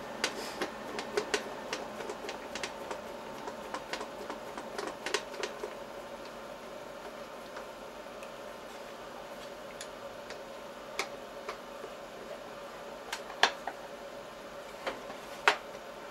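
Irregular small clicks and taps of metal parts as the angle-setting plate of a diamond-wheel tool grinder is adjusted by hand and its screws are fitted, a few sharper knocks near the end, over a steady low hum.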